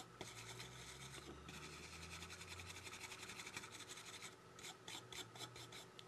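Faint metal-bristle brush scrubbing a phone motherboard in quick back-and-forth strokes, cleaning off water-damage residue. The strokes run close together for the first few seconds and thin out to a few separate ones near the end.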